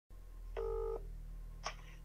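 Smartphone on speakerphone placing an outgoing call: one short ringing tone of under half a second, then a faint click about a second later, over a steady low hum.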